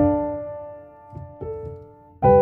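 Soft, slow solo piano music: a chord struck at the start rings on and fades, with two quiet notes a little past a second in.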